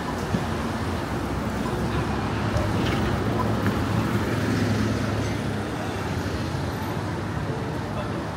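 Steady street traffic noise from cars passing on a busy road, with engine hum, and the voices of passers-by mixed in.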